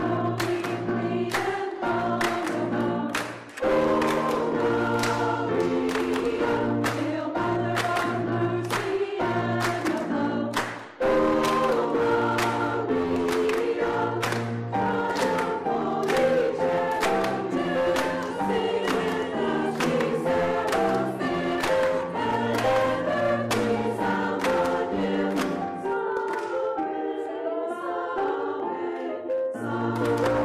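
Choral music: a choir singing with instrumental accompaniment, with two short breaks between phrases, about three and a half and eleven seconds in.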